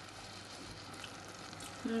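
Minced meat and vegetable pie filling simmering in a pot on very low heat: a faint, steady sizzle with a couple of small clicks.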